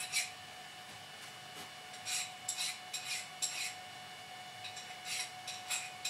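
Small metal objects being handled, clinking and scraping lightly in short bursts: a cluster about two to three and a half seconds in and a few more near the end. A faint steady hum runs underneath.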